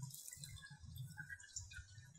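Faint small clicks and rustles of gloved hands handling the plastic bottles of a foam hair-dye kit while the dye solutions are combined.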